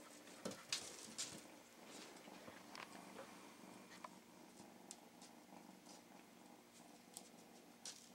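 Near silence: a kitten moving about on a wooden floor, with a few faint, sharp ticks and taps from its paws over a faint low steady hum.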